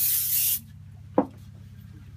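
Aerosol spray can hissing as glue activator is sprayed onto a glued moulding, stopping abruptly about half a second in. A single short knock follows about a second later.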